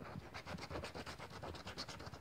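Premia 777 scratch-off lottery card being scratched: the coating scraped off in soft, quick, evenly repeated strokes.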